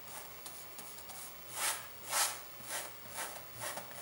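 Flat paintbrush rubbing across canvas in a series of short, scratchy strokes, the two loudest about halfway through and lighter ones after.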